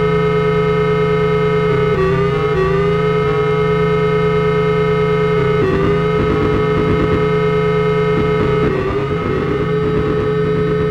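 Electronic music of long, held, computer-generated tones that slide up slightly into each new note every few seconds, over a steady low buzz, typical of the Atari 800XL's sound chip.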